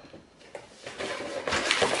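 Rustling and handling of a cardboard kit box and its packaging, soft at first and getting louder in the last half-second.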